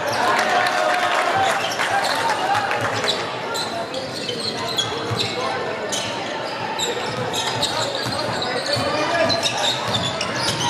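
Live basketball game in a large sports hall: a basketball bouncing on the hardwood court, short high squeaks of shoes, and indistinct shouts from players and spectators.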